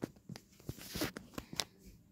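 Faint handling noise of a hand-held phone being moved: a scatter of light clicks, taps and rustles, several short ones spread through the two seconds.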